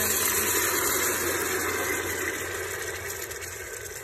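Canned mackerel and its sauce poured into a pot of hot sautéed onion and garlic, sizzling in the hot oil. The sizzle is loudest at the start and fades gradually as the pot cools.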